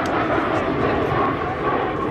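Military jet aircraft flying past overhead, their engines making a steady rushing noise with a faint high whine.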